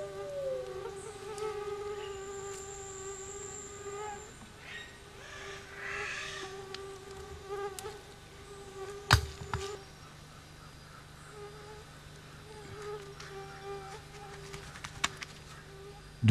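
A flying insect buzzing near the microphone, its pitch wavering, fainter in the second half. Rustling of leaf litter and rubble around six seconds in, and one sharp knock at about nine seconds.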